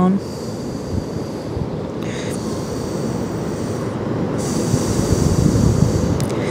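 Steady low rumbling outdoor background noise that swells slightly toward the end. A high hiss joins briefly about two seconds in and again in the second half.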